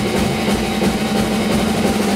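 A PDP drum kit played live over a recorded rock song: snare, bass drum and cymbals hit in quick succession over a steady band backing with sustained guitar notes.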